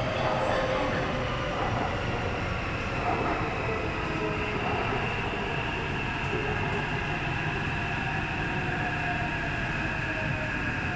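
Taipei Metro C371 metro train heard from inside the car as it slows into a station: continuous wheel-on-rail rumble with a steady high whine.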